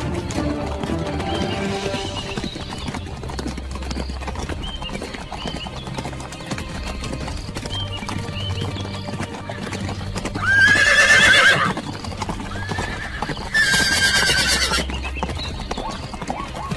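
Horses neighing: two loud whinnies, the first about ten seconds in and the second about three seconds later, with hooves clip-clopping over background music.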